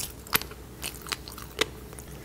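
Close-miked chewing of a mouthful of tobiko (flying fish roe), the eggs popping between the teeth as a handful of sharp, irregular pops, the loudest about a third of a second in.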